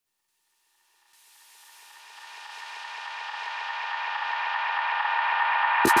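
A sustained electronic synth chord swells up out of silence, growing steadily louder over about four seconds, with a faint pulsing figure underneath. Right at the end a voice begins saying "we'll be".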